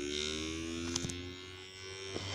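Homemade reed-switch pulse motor with a two-nail rotor, running from a supercapacitor, giving a steady hum that slowly rises in pitch as the rotor picks up speed. A faint click about a second in.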